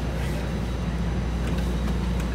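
CTA 5000-series rapid-transit car standing at a subway platform with its doors open, its onboard equipment and ventilation giving a steady low hum.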